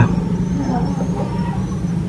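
A steady low rumble with no break.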